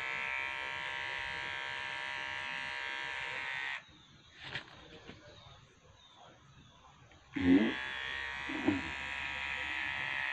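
Electric hair clippers running with a steady buzz, switched off about four seconds in and switched back on about three seconds later.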